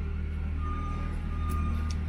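A vehicle back-up alarm sounding a steady high-pitched beep from about half a second in, over a low steady machine hum.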